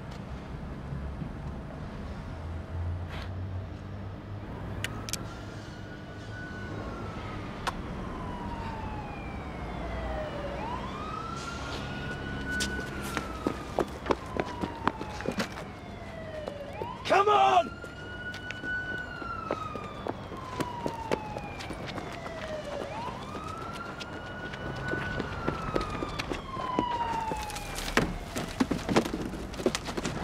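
Police siren wailing, its pitch slowly rising and falling about every six seconds, with a brief loud sound midway.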